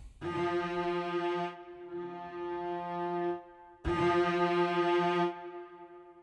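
Sampled cello section from VSCO 2 Community Edition, arco vibrato articulation, playing a sustained bowed note, then the same note again about four seconds in. The two notes trigger two different round-robin samples.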